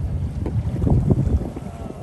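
Wind buffeting the microphone: an uneven low rumble that swells around the middle.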